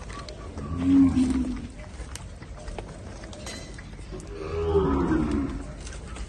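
Gyr heifers mooing: two low calls, one about a second in and a longer one near the end, the first the louder.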